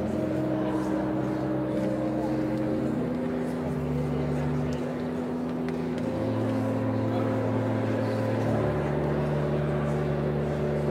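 Organ playing slow, sustained chords: several notes held at once, changing in steps every second or two over a steady low bass line.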